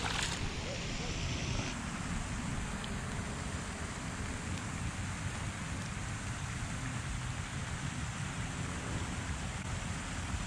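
A catfish splashes into the water as it is released, a short loud splash at the very start. After that comes a steady, even hiss of outdoor noise, wind and water, for the rest of the time.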